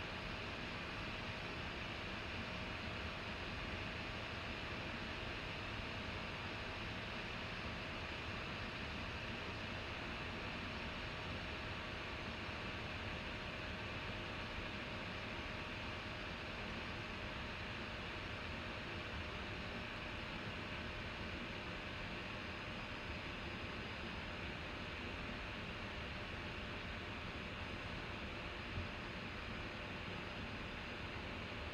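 Steady background hiss with a faint constant hum: open-microphone room tone with no distinct event, broken only by one small click near the end.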